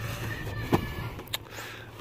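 Store room tone with a steady low hum, and two short sharp taps about half a second apart as boxed toy figures are handled on the shelf.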